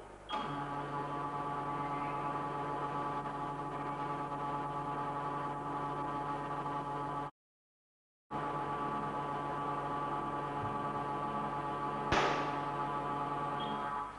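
Tensile testing machine running a test: its drive starts about a third of a second in with a steady hum made of several fixed tones, and the sound drops out for about a second midway. About twelve seconds in comes one sharp crack as the test piece fractures.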